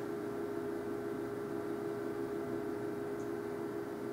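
Steady room hum made of a few fixed pitches, even in level throughout, with no other sound of note.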